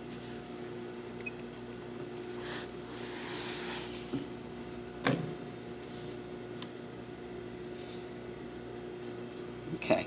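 Hands rubbing and smoothing fabric flat on a work table: a short rustle, then a longer hiss of about a second, then a single click, over a steady low electrical hum.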